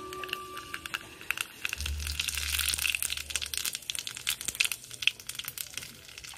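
Hot cooking oil sizzling and crackling in a small frying pan over a wood fire, with dense irregular pops that peak about two to three seconds in. Background music fades out in the first second.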